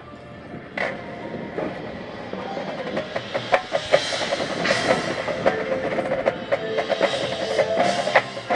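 A school percussion ensemble playing: mallet keyboards such as marimbas sound quick repeated notes over drums and other struck percussion. A sharp accent comes about a second in, and the music grows louder over the next few seconds.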